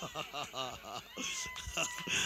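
Faint, high-pitched wavering cries, several short ones in the first second, followed by a thin steady whistle-like tone held for most of a second.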